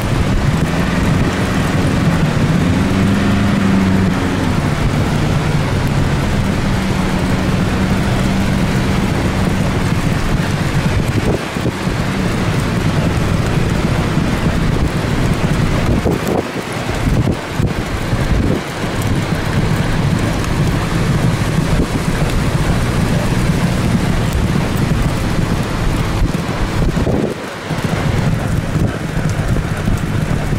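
Car driving at a steady pace, its engine hum and wind and road noise heard from inside the cabin; the engine note rises and falls a little in the first few seconds, then holds steady.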